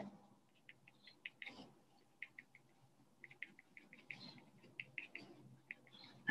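Faint, quick ticks of a gray crayon dabbing short, light dashes onto paper, coming in irregular clusters.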